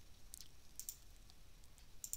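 Several faint, scattered computer mouse clicks over near-silent room tone.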